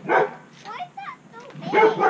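A dog barking: two loud barks, one just after the start and one near the end, with short high falling yips between them.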